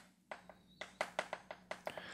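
Chalk writing on a green chalkboard: a quick, irregular series of light, sharp taps, about nine in under two seconds.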